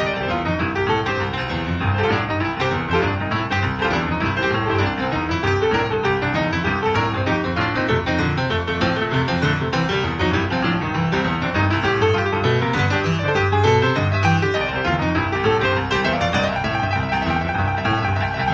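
Boogie-woogie piano music playing continuously at a steady level.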